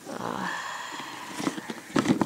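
A round cardboard gift box being handled and turned over on a fabric-covered surface: a soft rustle for about a second, then a few light taps near the end.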